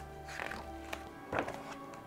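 Soft background music with steady held tones, and a picture-book page being turned, with two brief paper rustles about half a second and a second and a half in.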